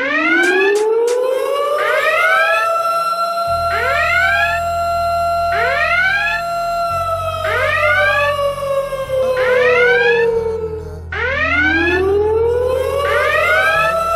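Siren sound effect between tracks: a long wailing tone rises, holds, sinks about 10 s in and rises again, with quick rising whoops repeating about once a second. A deep bass tone comes in underneath about 3.5 s in.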